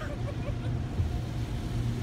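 Automatic tunnel car wash heard from inside a truck's cab: a steady low rumble of the wash machinery with an even hiss of foam and water spraying onto the windshield.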